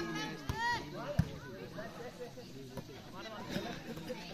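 Volleyball rally with players and onlookers shouting and calling, and two sharp slaps of hands striking the ball within the first second or so, the second one the loudest sound.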